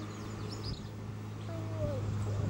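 Birds calling outdoors: a few short high chirps early on, then a single falling call near the end, over a steady low hum.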